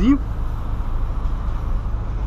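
Engine and road noise heard inside the cabin of a moving 2008 Volkswagen Polo Sedan: a steady low rumble.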